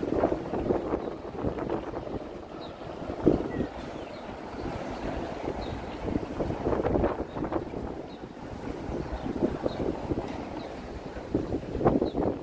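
Wind rumbling on a phone's microphone over general city street noise, uneven and gusty.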